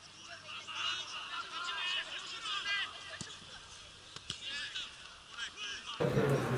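Field-side sound at a football match: distant shouting voices from the pitch and stands, with two short thuds about three and four seconds in.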